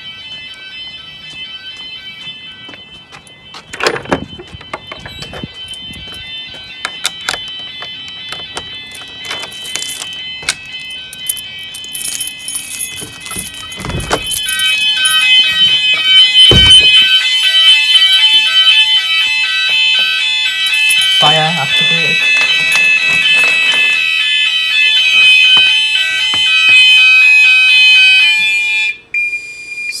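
Gent Vigilon fire alarm sounders going off in a fast repeating electronic alarm pattern, set off by a manual call point weekly test. The alarm gets much louder about halfway through, with a few knocks among it. It stops shortly before the end as the alarm is silenced, leaving one steady tone.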